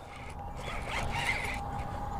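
Fishing reel being cranked steadily and faintly as a hooked pike is reeled in.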